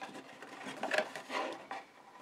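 Paper card rustling and rubbing under the hands as a card gift bag is handled and pressed, in a few short scrapes, loudest about a second in.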